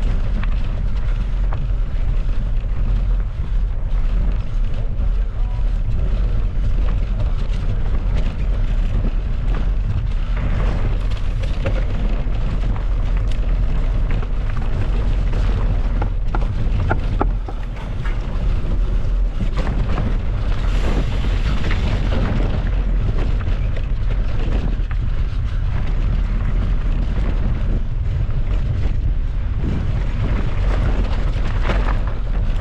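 Wind rumbling over an action camera's microphone as a mountain bike rides rough dirt and rock singletrack, with tyre noise and frequent rattles and knocks from the bike over the bumps.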